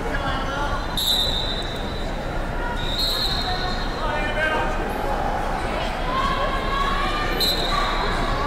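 Echoing wrestling tournament hall full of overlapping voices and shouts, with three short, high whistle blasts from referees: about a second in, about three seconds in, and near the end.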